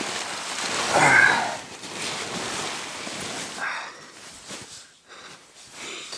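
Synthetic sleeping bag and tent fabric rustling as a person shifts and settles into the sleeping bag, with a sigh about a second in. The rustling thins out to a few scattered rustles in the second half.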